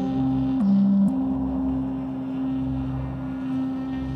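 Instrumental music: a steady low drone note that drops briefly about half a second in and returns, over a softer low pulse.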